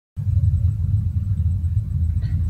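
A steady low rumble that starts just after the beginning, with nothing else heard over it.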